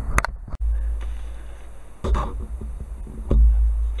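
Low rumbling handling noise on the camera's microphone with a few knocks and clicks as the camera is moved and repositioned; the sound cuts out briefly about half a second in.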